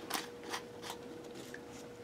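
Faint light clicks of a plastic brush-cap being screwed back onto a small jar and the jar being handled, a few small ticks spread over two seconds, over a faint steady hum.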